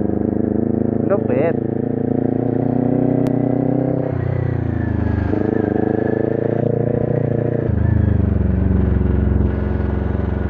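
Kawasaki Ninja 400's parallel-twin engine running as the bike is ridden at low speed. The engine note dips and recovers about four seconds in, then shifts again about a second later and near eight seconds, as the throttle and gears change.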